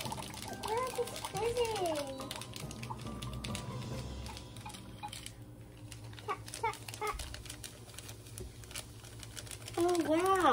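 A plastic wand stirring water in a Magic Mixies toy cauldron, with scattered light clicks against the plastic. A short sing-song voice sound rises and falls in the first couple of seconds.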